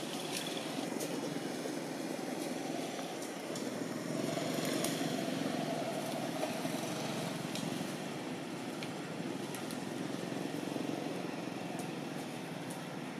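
A motor vehicle engine, such as a passing motorbike, over steady outdoor background noise. It swells about four seconds in and fades by about eight seconds, with scattered faint clicks.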